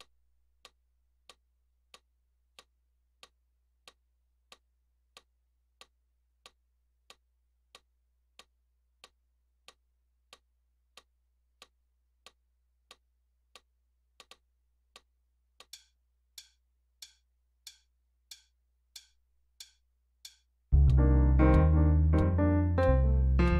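A metronome clicking steadily and faintly, about three clicks every two seconds; the clicks get louder about 15 seconds in. Near the end a Roland FP-50 digital piano comes in loudly, played in time with the clicks.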